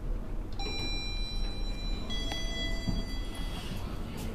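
A lift's two-note arrival chime: a higher note, then a lower one, each ringing for about a second and a half, over a steady low hum.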